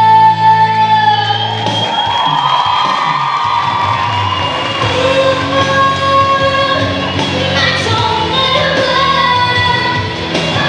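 A woman singing live into a microphone over musical accompaniment, holding a long high note that ends about a second in. The accompaniment thins out after about two seconds, and she carries on with a run of shorter sung notes.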